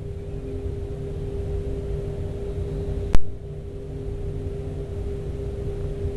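Steady engine-room machinery hum: a low rumble carrying one constant steady tone. A single sharp click comes about three seconds in.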